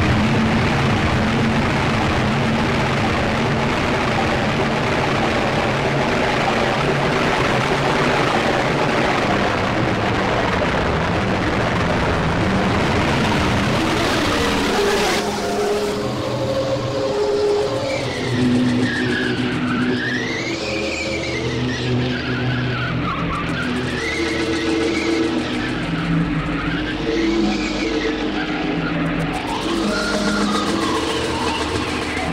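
Power-electronics noise music: a dense wall of harsh electronic noise for about fifteen seconds, then it cuts abruptly to an electronic tone sweeping up and down like a siren over a shifting pattern of low held tones.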